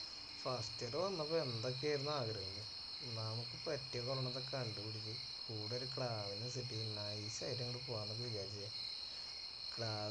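A man talking, over a steady high-pitched chorus of insects that runs on without a break.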